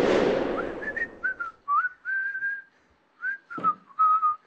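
A swelling whoosh that peaks and fades within the first second, then a person whistling a short, wandering tune: a single clear note sliding up and down in short phrases.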